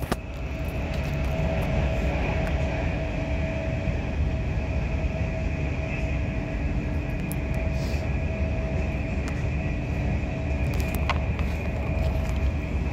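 Running noise of a passenger train heard from inside the carriage: a steady rumble of wheels on rail with a constant hum, and a sharp click about eleven seconds in.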